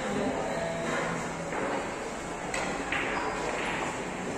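A single sharp click of ivory-hard carom billiard balls striking each other, about two and a half seconds in, over the murmur of a billiards hall.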